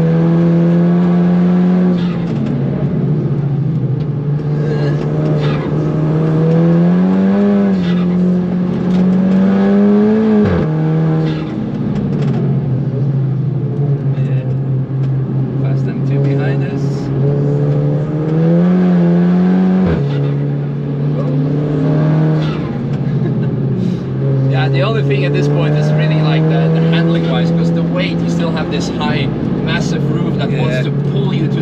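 Modified VW Caddy's swapped-in Audi S3 TFSI turbocharged four-cylinder, heard from inside the cabin under hard track driving. The engine note climbs under acceleration and drops sharply at an upshift about ten seconds in and again about twenty seconds in.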